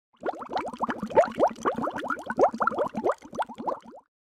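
Bubbling-water sound effect: a rapid string of short plops that each slide upward in pitch, roughly ten a second, cutting off suddenly at the end.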